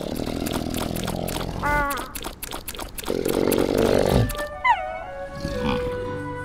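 Animated polar bear character's deep, breathy laughing grunts in two bursts. About four and a half seconds in, a cartoon music cue with quick falling sliding notes comes in and settles on held notes.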